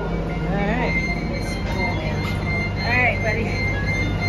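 Bus interior with a steady low engine hum, and a faint high-pitched beeping tone from the wheelchair lift's warning beeper coming in about a second in as the lift operates, not as loud as usual. Muffled voices in the background.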